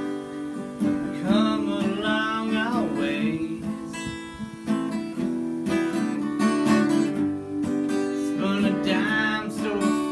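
Acoustic guitar strummed steadily, with a harmonica played from a neck rack over it in an instrumental passage of an Americana song; harmonica phrases come in about a second in and again near the end.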